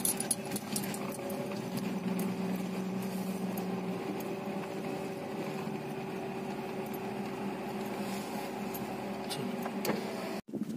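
Steady low engine and road hum heard from inside a moving car's cabin, with a few light clicks and rattles near the start.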